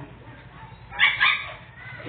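Puppies giving a couple of short yips about a second in.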